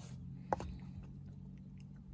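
Quiet with a faint low steady hum, one short click about half a second in and a few fainter ticks after it.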